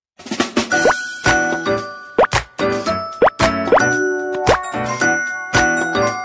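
Short outro jingle music: a light tune of bright, short notes with clicks, and several quick rising pop effects scattered through it.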